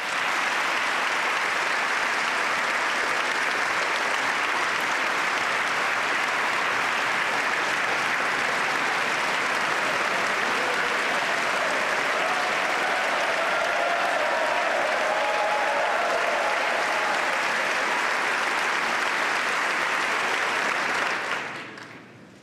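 Large crowd applauding steadily, dying away near the end.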